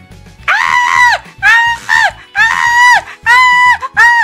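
A very high-pitched, cartoon-like voice wailing in four cries of about half a second each, every one rising and then falling in pitch, with a fifth starting at the very end.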